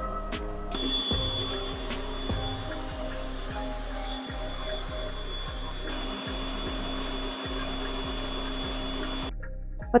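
Background music with a steady beat, over the steady whirr of a stand mixer's motor and wire whisk beating egg whites. The whirr starts under a second in, shifts slightly about six seconds in, and stops shortly before the end.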